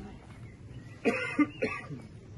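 A man coughing and clearing his throat in three short bursts, about a second in.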